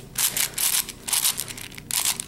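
Plastic layers of a Shengshou 6x6 speed cube being turned by hand: quick runs of clicking and scraping as the pieces slide past each other, in a few short bursts.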